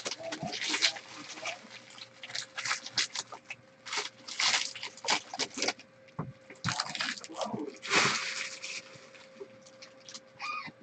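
Foil trading-card pack wrappers crinkling and cards being riffled and shuffled by hand, in irregular bursts with the loudest rustles around the middle and near the end. A faint steady hum runs underneath.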